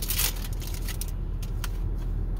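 Foil wrapper of a Pokémon booster pack crinkling as it is torn open, loudest in about the first half second, then a few light clicks as the cards are handled. A steady low rumble runs underneath.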